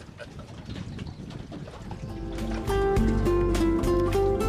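Faint outdoor background noise for about two seconds, then instrumental background music fades in and becomes loud.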